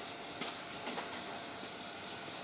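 Tobu 10030-series electric train rolling slowly into a station, with a couple of sharp clicks about half a second and one second in, as of wheels passing rail joints. Over it an insect trills in quick high pulses, which break off at the start and begin again about halfway through.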